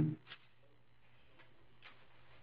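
The end of a man's drawn-out 'um' at the very start, then quiet room tone with a steady low hum and a few faint isolated clicks.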